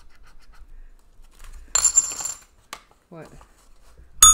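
A coin scratching the coating off a scratch-off lottery ticket in short, light strokes. About two seconds in, a coin clatters down with a brief metallic ring.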